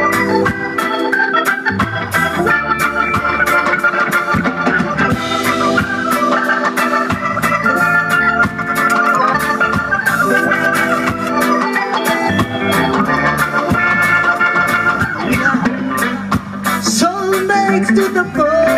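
Reggae band playing live: an instrumental stretch led by held organ chords over drums and bass.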